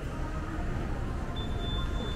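Shopping mall ambience: faint background music over a steady low rumble. A thin, high, steady tone comes in about a second and a half in.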